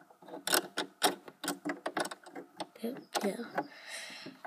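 Metal zipper foot clicking and rattling in quick, irregular taps against the snap-on presser-foot holder of a Singer Simple 3229 sewing machine as it is lined up to snap in.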